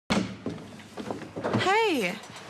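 A door thuds as it opens right at the start, followed by a few lighter knocks, then a voice calls out briefly near the end.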